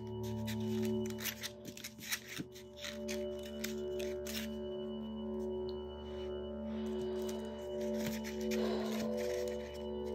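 Soft background music of held, sustained notes. Over it come light rustles and small taps of paper flowers being handled, mostly in the first half.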